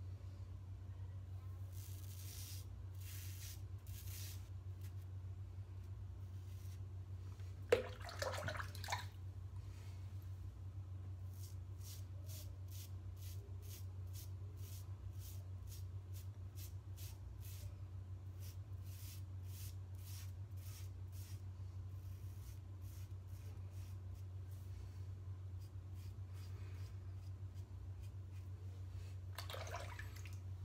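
Mühle R41 open-comb double-edge safety razor scraping through lather on a scalp in short, repeated strokes, roughly two a second at times, shaving against the grain. A brief louder sound of about a second comes around eight seconds in, over a steady low hum.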